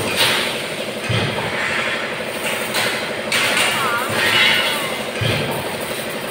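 Galvanized steel wire spirals clinking and rattling as they are handled on a concrete floor, over a steady workshop machine hum, with two dull thumps, one about a second in and one near the end.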